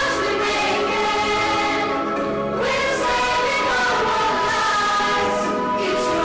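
A young vocal ensemble singing together in harmony, several voices holding and moving between sustained chords.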